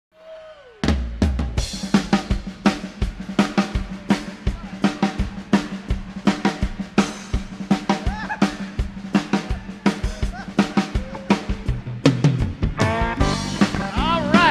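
Live rock drum kit solo: a fast, steady run of snare, bass drum and cymbal hits that starts suddenly just under a second in. Pitched sounds join near the end as the solo winds up.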